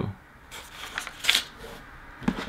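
A sheet of paper rustling as it is handled and laid down on a desk, a few crisp rustles between about half a second and a second and a half in.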